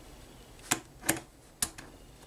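Three short, sharp clicks of hard plastic parts as the RC car kit's pre-assembled steering linkage is settled onto its metal posts and moved by hand.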